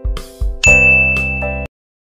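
Subscribe-button animation sound effect: two short clicks, then a bright bell-like ding ringing over a held chord that cuts off suddenly shortly before the end.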